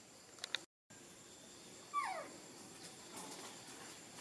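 Baby macaque whimpering: a brief high squeak, then about two seconds in a single short cry that falls steeply in pitch.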